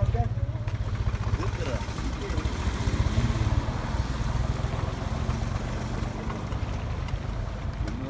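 Low rumble of wind buffeting the microphone, with faint voices of people talking in the background during the first few seconds.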